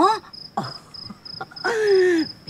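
A cricket chirping steadily in short high pulses, about five a second. Near the end a voice cuts in with a long, drawn-out exclamation falling in pitch, louder than the chirping.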